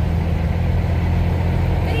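Steady low drone of a Kenworth W900 semi truck's diesel engine running, heard inside the cab.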